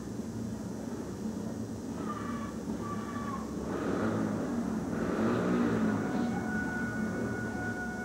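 Several speedway bikes' single-cylinder engines running at the start line, revved up and down, loudest about halfway through.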